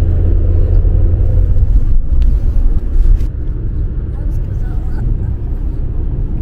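Road and engine noise of a moving car heard from inside the cabin: a steady, loud low rumble, easing slightly after about two seconds.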